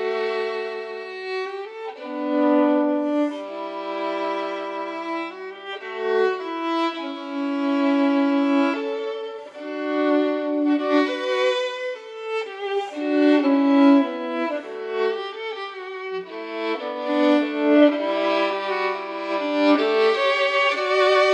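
A solo violin, the 1728 Stradivarius, played with the bow. It plays a slow melody of long held notes, some of them sustained for a second or more, and the line dips at times to the bottom of the violin's range.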